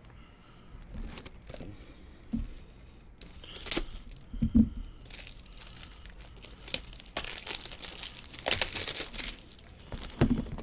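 A trading-card pack's wrapper being torn open and crinkled by hand, in irregular crackling bursts that grow densest in the last few seconds. A soft thump about four and a half seconds in.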